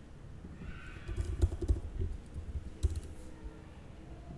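Typing on a computer keyboard: after a quiet first second, a quick run of keystrokes, then a few scattered taps.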